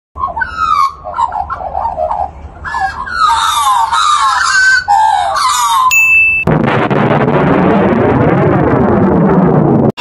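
Australian magpies carolling: warbling, gliding calls for about six seconds. Then a short electronic beep, followed by a loud, sustained jet-engine rush whose pitch sweeps down and back up, as in a jet flyby.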